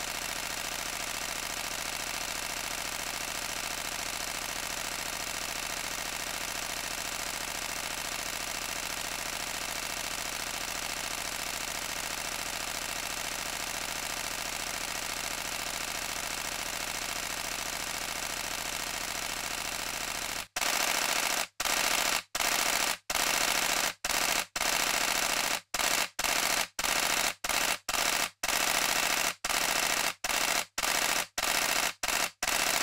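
Canon EOS-1D X Mark II mirror and shutter firing a continuous burst at 14 frames per second. About 20 seconds in, the clatter gets louder and breaks into short bursts with brief pauses between them, as the buffer fills and the camera waits on the card.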